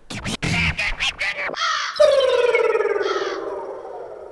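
A long, harsh cry that starts loud about two seconds in, then slides slowly down in pitch and fades over about two seconds. It is laid over the scene as a sound effect, with short hisses just before it and partway through.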